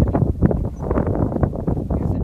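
Wind buffeting the phone's microphone: a gusty low rumble with irregular crackles.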